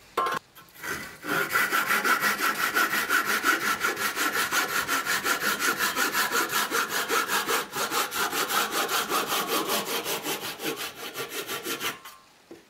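A handsaw cuts through a turned wooden workpiece with a fast, even rhythm of back-and-forth strokes. The sawing starts about a second in, after a brief knock, and stops abruptly at the end.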